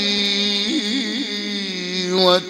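A man's voice in Egyptian religious chanting (inshad) holding one long sung note, with a quick wavering ornament about a second in.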